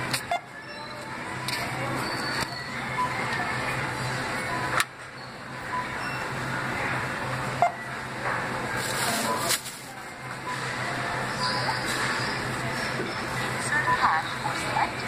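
Shop background of faint music and distant talk over a steady low hum, broken by a few sharp clicks.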